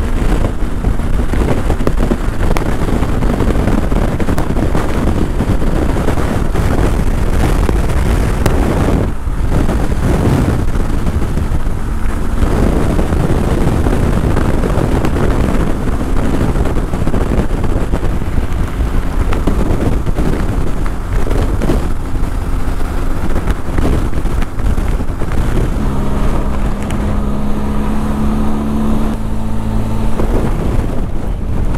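Wind rushing over the microphone of a motorcycle riding at road speed, with the bike's engine running underneath. Over the last few seconds the engine's steady note stands out more clearly.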